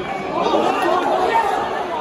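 Indistinct chatter of spectators talking near the microphone in a football stand.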